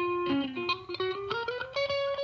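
Solo guitar playing, picking a run of single notes, several a second, with the melody stepping upward toward the end.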